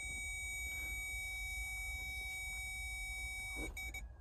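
A steady, high electronic tone with a fainter lower tone under it, over a low rumble. The tone cuts off with a couple of clicks near the end.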